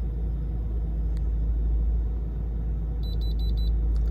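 Handheld OBD2 scan tool giving four quick high-pitched beeps about three seconds in as it finishes re-reading the codes, finding none, over a steady low rumble.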